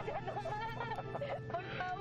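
Background music: a quick run of short melodic notes over sustained held tones.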